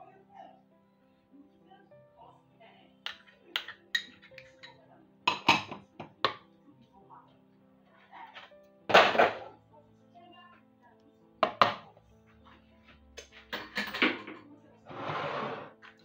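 Soft background music with long held notes. Under it, a knife or spoon clicks and knocks against a plastic food-processor bowl as hot sauce is scraped in, about a dozen times, the sharpest knock about nine seconds in. A brief rustle comes near the end.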